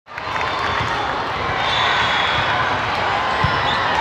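The din of a large indoor hall with volleyball being played: steady mixed chatter of many voices, and several dull thumps of volleyballs being hit and bouncing on the floor.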